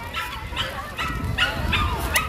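A dog whining and yipping: a run of short high-pitched cries, over wind rumble on the microphone.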